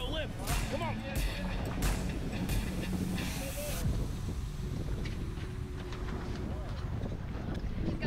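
Background music for about the first four seconds, over a steady low rumble of wind and boat noise on the microphone, with indistinct voices.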